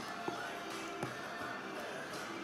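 Quiet background music with sustained notes, with two faint knocks of a spoon against the plastic tub as thick slime is stirred, about a third of a second and about a second in.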